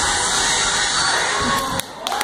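A group of children shouting and cheering, loud and dense, cutting off abruptly near the end as the first claps of applause begin.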